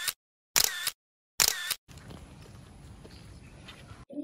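Three camera-shutter sound effects, about 0.8 s apart, each a short sharp burst with dead silence between them. These are followed by about two seconds of steady faint outdoor background hiss.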